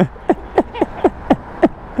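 A man laughing hard in a quick string of short squeals, each falling in pitch, about four a second.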